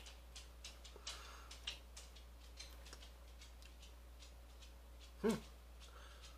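Quiet room with faint, irregular ticking clicks, and one short low hum from a man's voice, an appreciative "mm" while tasting beer, about five seconds in.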